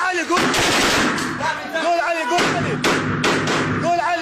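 Close-range automatic gunfire from rifles and a belt-fed machine gun inside a building, dense at first, then several separate sharp shots in the second half, under a chanted male vocal track.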